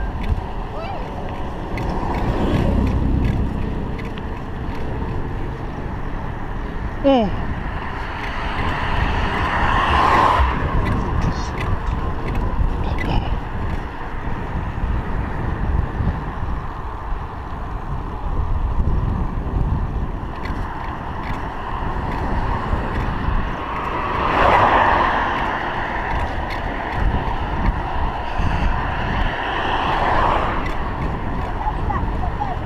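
Steady wind rumble and road noise on a chest-mounted GoPro Hero 3 while riding a bicycle on tarmac, swelling several times as cars pass, most strongly about ten seconds in, about twenty-five seconds in, and at the very end.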